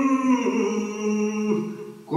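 A man singing a Kashmiri Sufi manqabat unaccompanied, holding one long note that steps down in pitch about half a second in and fades away near the end as the line closes.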